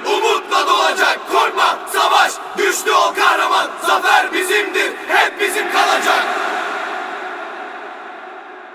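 A crowd of voices chanting in quick, rhythmic shouts, a group battle-cry chant that ends about six seconds in, leaving a lingering tone that slowly fades out.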